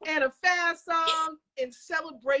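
A female voice singing out in short excited phrases, holding drawn-out notes that waver.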